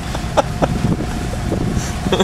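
Steady low drone of a dive boat's engine, with a faint steady hum over it and brief snatches of voices.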